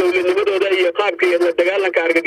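A man speaking continuously over a telephone line, the voice thin, with almost no low end.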